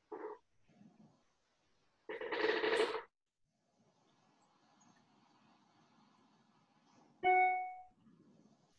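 A single clear ringing tone, struck suddenly and dying away within half a second, near the end, like a bell or electronic chime. About two seconds in there is a louder, denser sound lasting about a second.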